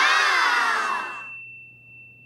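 A chime-like ding sound effect: a bright shimmering ring that fades away over about a second and a half, leaving a thin high ringing tone.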